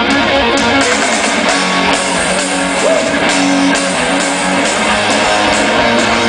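Live rock band playing electric guitars at the start of a song, steady and loud, with a short bent note about three seconds in.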